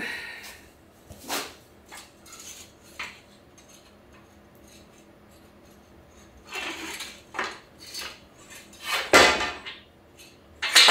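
Rusted steel leaves of a truck leaf spring pack clinking and scraping against each other as the pack is pulled apart by hand. A few scattered metal knocks, then a busier run of clanks and scrapes, with the loudest clank near the end.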